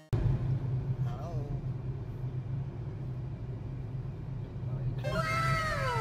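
Steady low hum of a car running, heard inside the cabin. A short falling-pitch vocal sound comes about a second in, and several falling, whining voice sounds come near the end.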